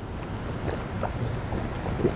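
Steady wind noise on the microphone, a low rushing rumble with no clear event in it.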